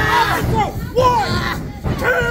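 Several people shouting and yelling over a small crowd, with loud drawn-out yells that rise and fall, one of them about a second in.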